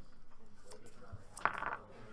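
Magic: The Gathering cards being handled on table playmats, with one sharp tap about one and a half seconds in as a card is set down.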